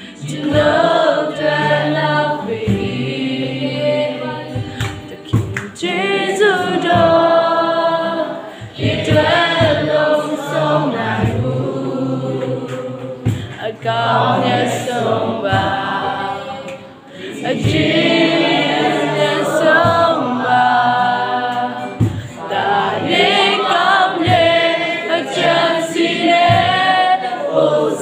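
A worship song: several voices singing together over strummed acoustic guitars, in continuous sung phrases.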